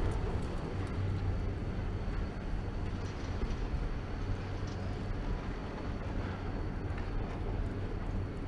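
Steady low rumble with wind noise on the microphone during a ride on a Doppelmayr fixed-grip quad chairlift, the chair moving along the haul rope between towers.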